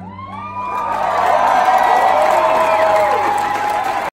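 Concert audience cheering and whooping, with many rising and falling yells, swelling loud about half a second in and holding.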